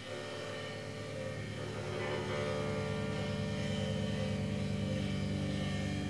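Electric guitar and bass guitar through amplifiers holding long, sustained notes as a steady drone, with no drums. The sound grows louder about a second in and again about two seconds in.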